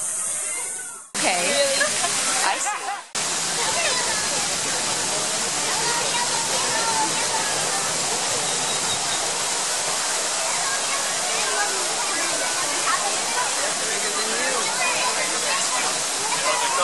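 Steady rushing noise like running water, with indistinct voices of people in the background; the sound drops out briefly between about one and three seconds in.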